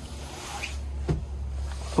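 Handling noise from a handheld camera being swung around: a low rumble with faint clothing rustle and one soft click about a second in.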